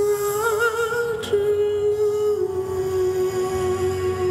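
A man's voice holding one long wordless note into the microphone over the ballad's backing music. The note wavers near the start and then steps down slightly twice.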